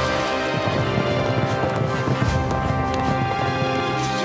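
Hoofbeats of several galloping horses, under music with long held notes.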